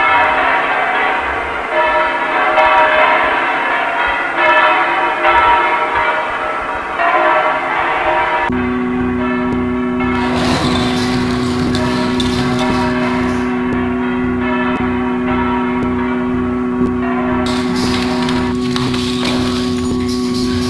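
Bells pealing in the soundtrack, with repeated strikes about once a second. About eight seconds in, the bells cut off and a steady low two-note drone takes over, with a pulsing rumble underneath.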